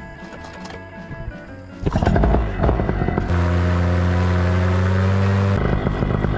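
Background music ends, and about two seconds in a paramotor engine starts up and settles into a loud, steady run.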